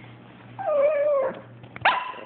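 Chihuahua whining and 'talking' in complaint: one drawn-out, slightly falling cry lasting under a second, then a short, sharp rising cry near the end.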